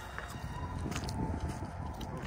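Footsteps of several people walking on a dirt-and-gravel driveway over a low rumble, with a faint, steady high tone in the distance.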